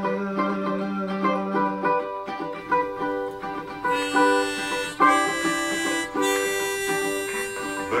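Baritone ukulele tuned GCEA playing an instrumental break between sung lines, a held sung note dying away about two seconds in. From about halfway, long sustained bright melody notes sound over the plucked strings.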